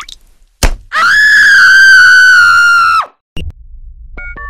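One loud, high-pitched scream, held for about two seconds with a slight fall in pitch, then cut off abruptly. A sharp click comes just before it, and a low hum starts after it.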